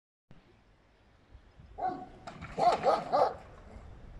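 A dog barking, a quick run of about five barks starting about two seconds in.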